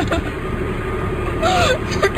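Steady low rumble inside a car's cabin, the engine running, heard through a phone recording. A short voice comes in about one and a half seconds in.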